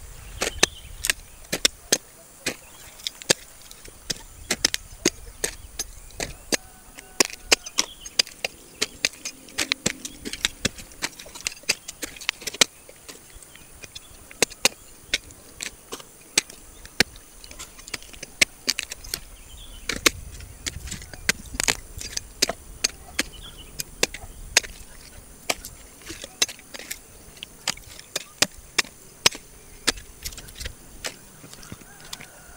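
Machete chopping harvested cassava roots off their woody stems: sharp, irregular chops, one to a few a second, some coming in quick runs of two or three.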